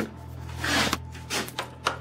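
A stuck wooden door being worked at by hand, with rubbing and scraping noises and a sharp click near the end.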